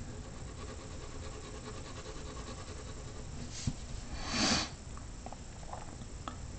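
Faint scratching of a graphite pencil shading on paper, with a small tap and then a short breath-like rush of noise about four and a half seconds in.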